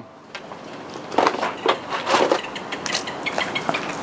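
Rummaging among small loose items: irregular clicks, taps and rustling as things are picked up and moved about, growing louder about a second in.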